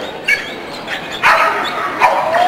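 Belgian Tervuren barking while running an agility course: a short yip early on, then a louder, longer bark a little past a second in.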